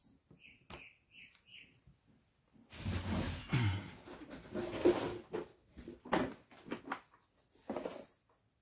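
Battery-pack parts being handled on a workbench: a few sharp clicks and knocks, and a louder stretch of scraping and rustling in the middle. A few faint, short high chirps come in the first two seconds.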